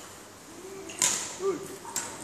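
Badminton racket swishing through the air in shadow strokes, the sharpest swish about a second in and others near the end, with short sneaker squeaks on the hall floor as the player moves.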